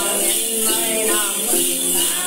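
Then ritual music: a đàn tính, a long-necked gourd lute, plucked in steady repeated notes under wavering singing, with a constant shaking jingle of bell rattles.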